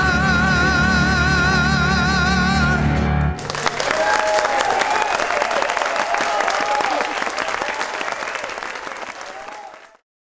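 A male singer holds a final long note with steady vibrato over the band, and the music cuts off about three seconds in. A live audience then applauds, and the applause fades out near the end.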